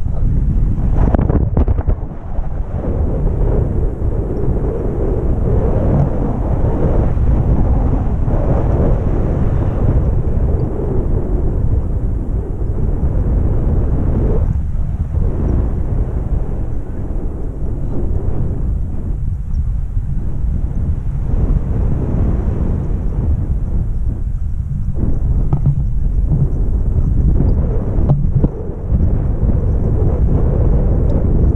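Wind buffeting the camera microphone on a tandem paraglider in flight: loud, low, steady noise that thins briefly a few times.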